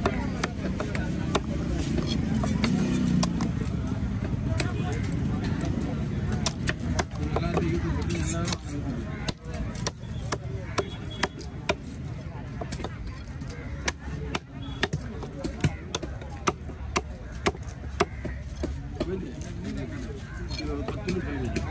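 Large fish-cutting knife chopping diamond trevally into chunks on a wooden chopping block: a run of sharp chops, most distinct and about two a second in the second half.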